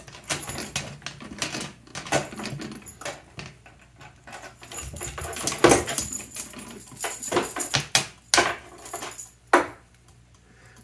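Metal lamp chain clinking and rattling as it is handled and wire is threaded through its links: irregular light clicks of link against link, with a few louder clinks in the second half.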